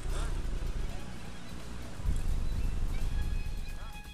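Wind buffeting a handheld camera's microphone in low, gusty rumbles, easing about a second in and picking up again near two seconds.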